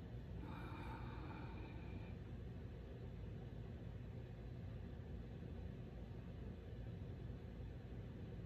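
A slow, faint inhalation through the nose in the first two seconds, the start of a deep-breathing pranayama. Then the breath is held with the upper abdomen locked (bandha), leaving only a low steady room hum.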